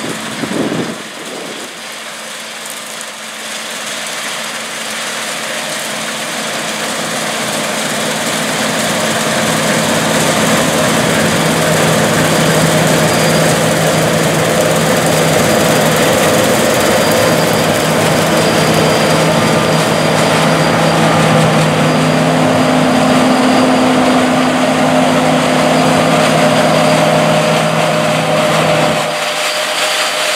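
A John Deere S690 combine harvesting soybeans, its engine and threshing machinery running under load with a steady hum. It grows louder over the first ten seconds or so as it comes close, holds there, then eases off slightly near the end as it passes by.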